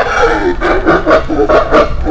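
Loud, rough vocal cries in a string of short bursts, about three a second.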